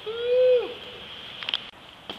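A man's voice giving one short whooping hoot that rises and falls, lasting under a second. A couple of faint clicks follow about a second and a half in.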